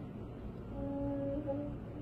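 A quiet pause holding a faint, soft hum at one steady pitch for about a second, starting just under a second in.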